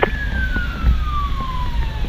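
Fire engine siren: one long tone gliding steadily down in pitch, heard from inside the cab over the low rumble of the engine.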